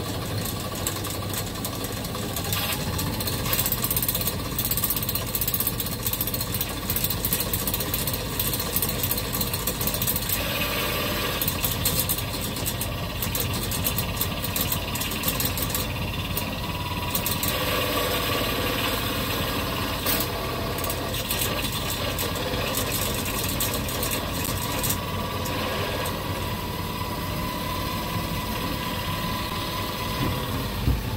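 Hoverboard hub motor spun fast by a pedal drive with no load on it, a steady mechanical whir and rattle with a faint whine that rises slightly and then holds.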